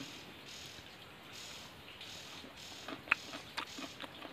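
Faint, steady chirring of forest insects. Near the end come a few short clicks from eating with chopsticks.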